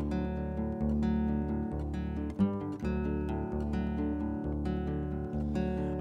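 Steel-string acoustic guitar strummed steadily, sustained chords with a stroke roughly every three-quarters of a second.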